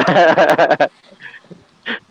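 A man laughing loudly in one burst lasting just under a second, then faint scattered sounds.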